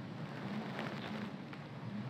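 A pause in speech, filled by a faint, steady hiss of background room noise.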